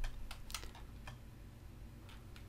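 A few faint computer keyboard keystrokes and clicks, mostly in the first second or so.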